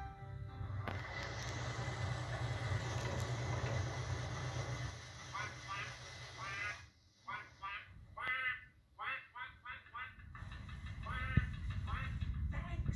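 A narrowboat's Thornycroft engine running with a steady low drone as the throttle is worked, then a rapid string of short duck quacks over about five seconds, played through a television speaker.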